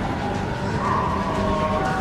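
Steady low rumble of a moving train, with sustained high pitched tones coming in over it about a second in.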